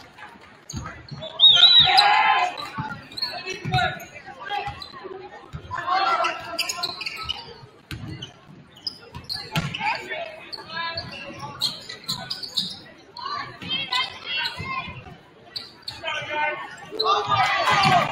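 A basketball being dribbled on a hardwood gym floor, short thumps at uneven intervals in an echoing gym. Voices shout over the play, loudest about two seconds in.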